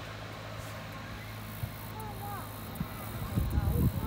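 Outdoor field ambience: a steady low hum with faint, distant voices. Near the end, gusts of wind buffet the microphone.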